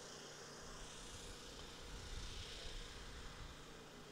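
Faint outdoor background noise: a low, steady hiss with a little low rumble that swells slightly through the middle.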